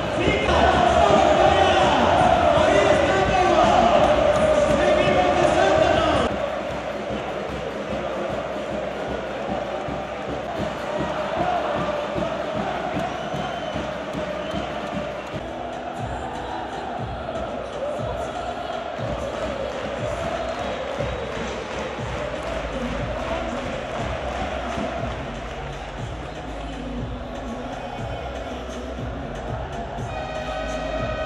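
A large arena crowd of basketball fans chanting and cheering in unison, loud for about the first six seconds, then suddenly quieter as a more distant crowd chant carries on. Music comes in underneath in the last several seconds.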